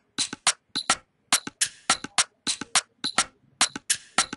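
An Afrobeats-style percussion loop playing back from the FL Studio step sequencer: a syncopated pattern of sharp, bright percussion samples at about four to five hits a second, with no kick drum yet.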